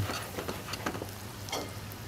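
Chanterelle mushrooms frying in butter in a pan: a soft sizzle with scattered small crackles and ticks.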